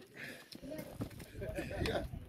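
Indistinct voices of people talking, with a few short knocks, the sharpest near the end.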